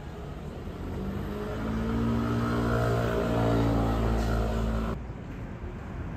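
A motor vehicle's engine running close by, growing louder over a few seconds and cut off abruptly about five seconds in.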